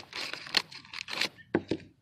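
Scissors cutting open a packet of tulip bulbs made of perforated paper and clear plastic, with a sharp snip at the start and then irregular crinkling and rustling of the packaging.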